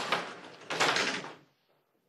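A room door being pushed open: two loud noisy bumps about three-quarters of a second apart, then the sound cuts off suddenly to silence.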